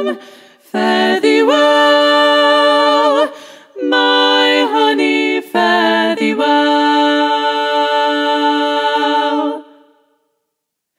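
Unaccompanied women's voices in close three-part harmony (SSA a cappella) singing three phrases. The last is a long held chord that fades out shortly before the end.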